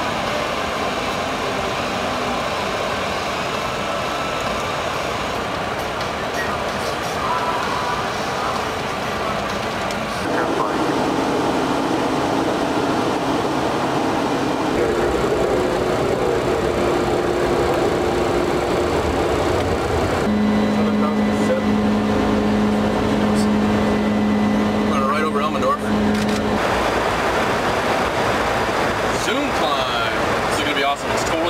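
Steady in-flight noise on the flight deck of a CC-150T Polaris jet tanker: the rush of air and engine hum. The noise changes character abruptly several times, with a steady low hum tone through the later part.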